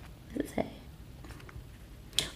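A woman's soft, breathy laugh: two short puffs of voice about half a second in, then quiet room tone.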